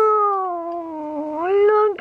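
A woman's long drawn-out "awww" cooing over a puppy, one unbroken call whose pitch slides down and then rises back up near the end.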